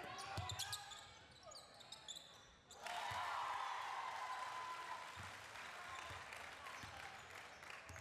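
Game sound from a basketball game in a gym: a basketball bouncing on the hardwood with sharp squeaks and clicks from the court. About three seconds in, crowd noise from the stands rises suddenly and carries on under further ball bounces.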